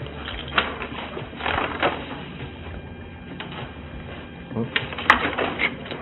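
Handling noise from fabric and plastic on a steel table: scattered rustles and clicks in short clusters over a steady low room hum, picked up by a body-worn camera microphone.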